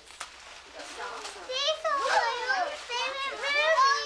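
A young child's high-pitched voice chattering and exclaiming excitedly, starting about a second and a half in after a quieter moment.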